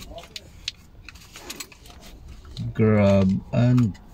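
A man's voice close to the microphone: a held, steady low hum, then a second, shorter one about three seconds in, over faint clicks and rattles inside a parked car.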